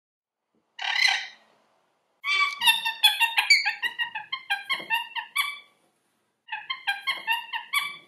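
Rainbow lorikeet calling: one harsh screech about a second in, then a quick run of short chattering notes that pauses briefly and starts again near the end.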